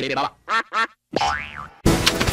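Edited cartoon logo sound effects: two short pitched chirps, then a single pitch glide that rises and falls. A loud, noisy burst starts just before the end, as the next logo version begins.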